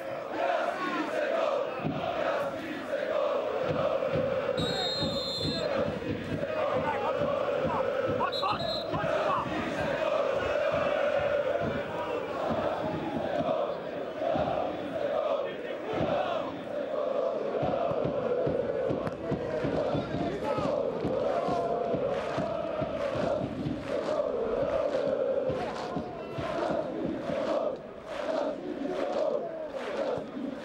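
Football crowd chanting in unison, a continuous sung chant from the terraces. Two short high whistles sound about five and eight seconds in, and sharp regular beats run through the second half.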